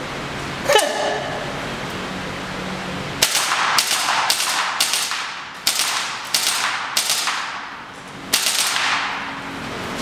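VFC MP5K gas blowback airsoft gun fired in single shots: about a dozen sharp reports, two or three a second, starting about three seconds in with a short pause near the end, each with a short echo. A single sharp click comes about a second in.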